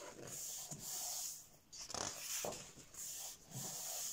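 Paper pages of a large thick-paper colouring book being turned one after another, several swishes in quick succession, with hands rubbing the pages flat.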